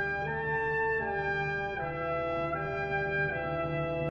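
Brass music: a slow melody of held notes, moving to a new pitch about every three-quarters of a second.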